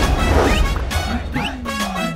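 Dramatic TV background music with two heavy percussive hits about a second apart, and a low sliding tone falling near the end.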